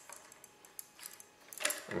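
A few faint metallic clicks and light handling noise from the aerial's metal mounting bracket as its nut is loosened by hand.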